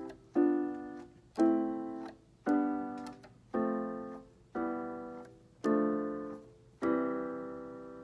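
Casio light-up keyboard in a piano voice playing seven three-note chords (triads), one about every second, each left to die away, the last held longest. The same triad hand shape is moved along the keys from chord to chord.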